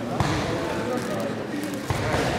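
Indistinct voices of people talking, with two sharp thumps, one just after the start and one near the end.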